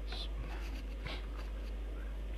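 Steady low electrical hum in the recording, with a few faint, brief hissy sounds near the start and about a second in.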